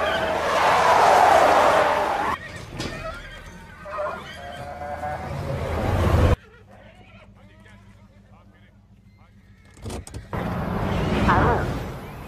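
Film soundtrack: a pickup truck's tyres screeching as it slides sideways for about two seconds, followed by quieter vehicle and road noise. About six seconds in the sound cuts abruptly to a low level with faint voices, and a loud burst of sound returns near the end.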